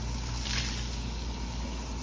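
Water poured from a plastic watering can splashing onto a wool rug, with a brief louder splash about half a second in. Under it runs a steady low machine hum.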